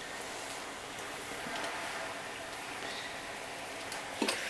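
Steam iron hissing steadily as it puts out steam.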